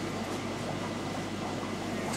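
Air-driven aquarium moving bed filter running: a steady bubbling hiss of air rising through the ceramic media, over a steady low hum.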